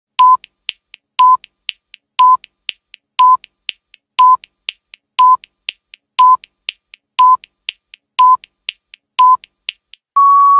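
Countdown timer sound effect: ten short high beeps, one each second, each with a click, and a fainter tick between beeps.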